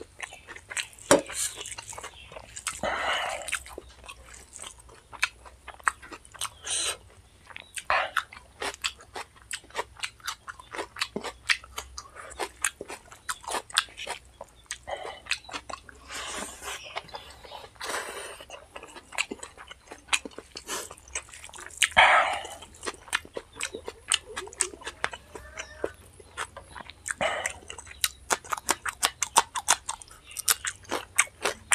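Close-miked mouth sounds of a person eating biryani and chicken curry by hand: chewing with many quick, irregular wet smacks and clicks, and a few longer noisy sounds.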